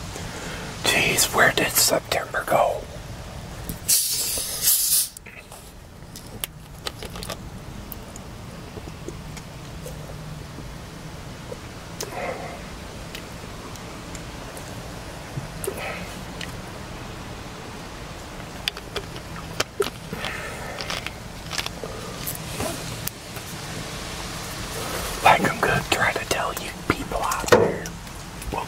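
A plastic soda bottle twisted open, letting out a short hiss of escaping fizz about four seconds in, followed by quiet sips from the bottle. Near the end comes a run of louder close-up crackling, mouth and handling noises.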